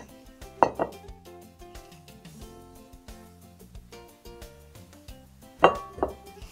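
Metal kitchen tongs clinking twice, about a second in and near the end, as ears of boiled corn are lifted out of a stainless steel pot, over quiet background music.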